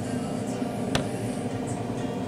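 Thick skimmed yoghurt pouring from a carton into a bowl of muesli, with one sharp click about a second in, over a steady background of music.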